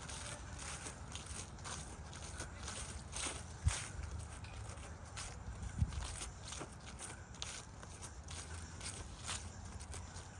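Footsteps of a person walking at a steady pace across grass strewn with dry leaves, with light crunching at each step. Two dull thumps stand out, a little under four seconds in and about six seconds in.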